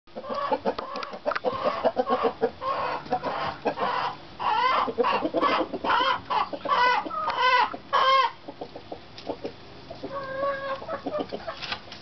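A flock of hens clucking and calling, busy and overlapping for the first eight seconds or so, with the loudest drawn-out calls near the middle, then thinning to scattered clucks.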